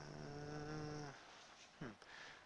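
A man humming one held, steady note for about a second with his mouth closed, as in a thinking "hmmm". Near the end comes a short falling vocal sound.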